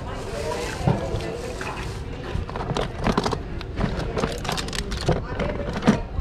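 Small plastic toy figures clattering and clicking against each other as hands rummage through a plastic tub full of them, the clicks coming thick and fast in the second half.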